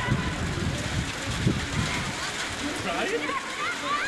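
Live football pitch sound: a low, gusty rumble of wind on the microphone, with distant shouts and calls from players and spectators, more of them near the end.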